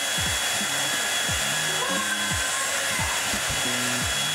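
SilverCrest hand-held hair dryer running steadily: a constant rush of air with a faint high whine.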